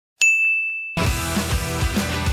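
A single bright ding, one held high tone, sounds about a fifth of a second in and cuts off just before a second in. Music with a steady beat then starts.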